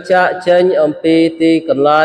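A man reciting Quranic Arabic in a slow, melodic chant, each syllable held on a steady pitch with short breaks between.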